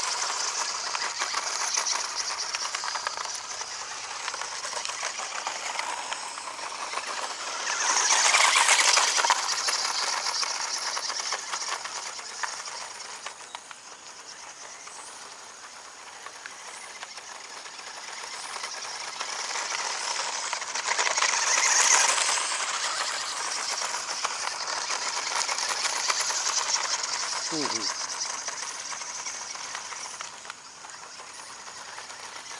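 Toy-grade RC off-road buggy driving on loose gravel: its small electric motor and tyres crunching and scattering stones, swelling twice as it comes close, about eight seconds in and again about twenty-one seconds in. A brief falling whine near the end. The owner finds the car short of torque.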